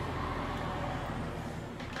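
Steady low rumble of road traffic coming in through an open window, easing slightly towards the end.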